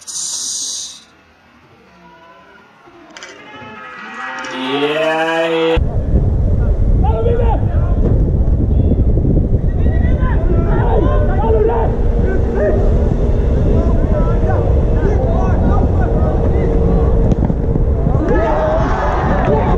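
Shouts of players or spectators rising as a shot goes in. About six seconds in, a loud, dense rumble starts suddenly and runs on, with voices and a few steady tones over it.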